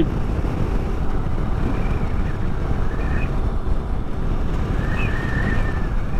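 Motorcycle cruising at highway speed, with a steady rush of wind over the microphone mixed with engine and road rumble.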